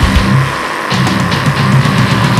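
Death metal recording: distorted guitars over fast, pounding kick drums. The drums drop out briefly about half a second in, then resume.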